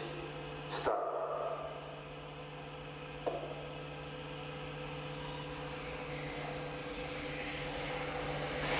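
Earthquake shake table running with a steady low hum, as the simulated Hanshin-Awaji earthquake motion gets under way beneath a heavy server rack on seismic-isolation feet. A short sharp sound about a second in and a fainter click a little after three seconds, and a rising noise that builds toward the end as the shaking grows.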